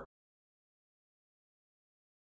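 Dead silence: the sound track is blank, after the last syllable of a man's narrating voice cuts off right at the start.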